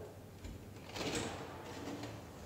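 Inner glass door of a CO2 cell-culture incubator being unlatched and opened: a soft, brief noise about a second in.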